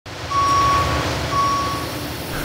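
Forklift backup alarm sounding two steady single-pitched beeps about a second apart, over a low rumble and hiss of machinery: the forklift is reversing.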